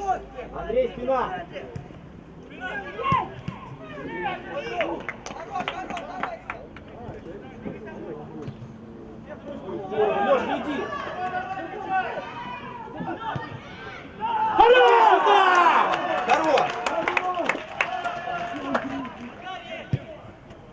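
Football players and coaches shouting to each other across the pitch during play, the shouting loudest and busiest near the end, with a few short knocks among it.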